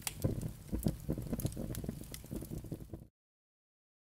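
Fire sound effect: flames crackling in dense, irregular snaps over a steady low noise. It cuts off suddenly about three seconds in.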